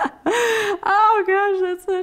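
A woman laughing hard: a loud gasping in-breath, then a long, drawn-out high voiced laugh with short catches in it.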